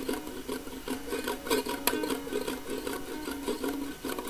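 Lo-fi noise-folk instrumental: a plucked string instrument picks a quick, repeating run of notes over a hissy recording, with occasional clicks.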